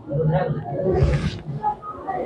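A cobra's short hiss about a second in, over indistinct men's voices, as the agitated snake is lifted on a snake hook.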